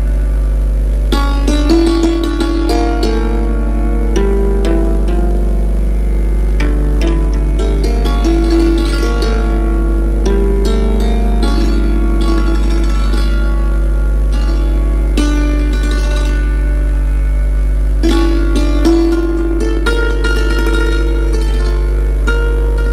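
Santoor, a hammered dulcimer struck with light mallets, playing a melody in Misra Kirwani: crisp struck notes, some held for about a second, over a steady low drone.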